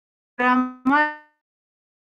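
A woman's voice making two short syllables in a row, the second rising slightly in pitch, with dead silence between her words.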